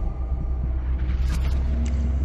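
A deep, steady rumble in the music video's soundtrack, with a few faint clicks about midway.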